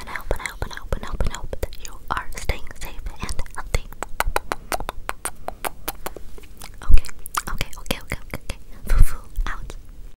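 ASMR mouth sounds close to the microphone behind a cupped hand: whispering mixed with rapid clicking mouth and tongue sounds. Two louder thumps land about seven and nine seconds in.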